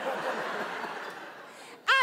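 Theatre audience laughing, the laughter fading away over about two seconds.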